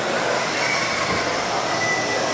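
Several 1/12-scale electric pan cars with 17.5-turn brushless motors racing on carpet: a steady high-pitched whine of motors and gears over a hiss of tyres, with faint shifts in pitch as the cars speed up and slow.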